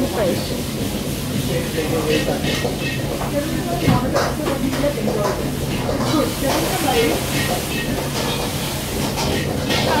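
Wok-station kitchen noise: a steady hum and hiss of the gas wok burners and extraction, with metal ladles scraping and clinking in the woks now and then.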